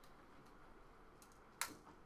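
Near silence: room tone with a faint tick, then a single sharp click about one and a half seconds in.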